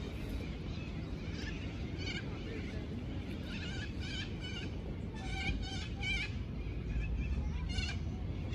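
A series of short, wavering animal calls, several in quick succession from about two seconds in, over a steady low background rumble.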